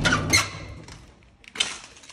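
Old rusted door squeaking as it is pushed past, with a short high squeal about a third of a second in. A short sharp sound follows near the end.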